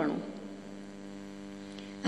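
Steady electrical mains hum, a buzz with many evenly spaced overtones, left alone in a pause in speech; the end of a woman's word fades out at the very start.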